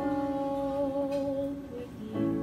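A young girl singing one long held note with a slight waver over sustained instrumental accompaniment. The note ends a little before the end, followed by a brief short note.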